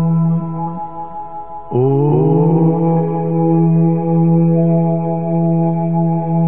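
Meditation music with a steady sustained drone; a little under two seconds in, a chanted mantra voice sets in over it and is held.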